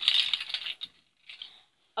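A bunch of key rings with metal rings, chains and charms jingling and clinking as it is handled, busiest in the first second, then dying away, with a brief faint rattle about a second and a half in.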